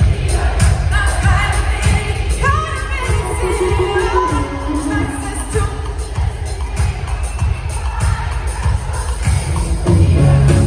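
Live pop concert music echoing through an arena: singing over a steady bass beat, with the crowd audible beneath it.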